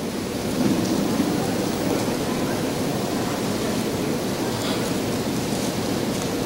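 Steady, rain-like rustling from a congregation leafing through their Bibles to find the announced verse.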